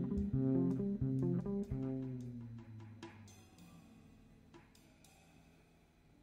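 Live jazz trio with the electric bass to the fore plays a short run of notes in the first two seconds. The last notes then ring out and fade away, leaving the room almost quiet.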